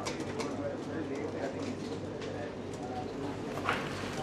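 A bird cooing, pigeon-like, against faint background voices, with a few small scattered clicks.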